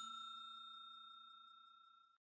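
Ringing tail of a bell-like ding sound effect: one clear high tone fading steadily away.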